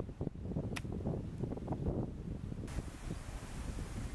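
A golf iron strikes the ball once, a sharp click just under a second in, as a pitch shot is played. Wind rumbles on the microphone.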